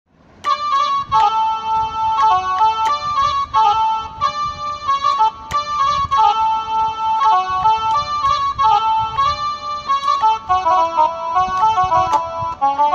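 A melody played note by note on a Casio SA-21 mini electronic keyboard, starting about half a second in. Lower notes join the tune near the end.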